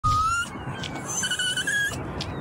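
Mini poodle whining in distress: a short rising whine at the start, then a longer, wavering high whine about a second in.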